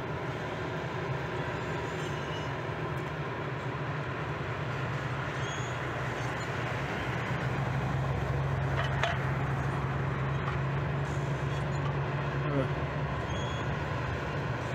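Steady low machinery hum over a wash of outdoor noise, the hum growing stronger about halfway through.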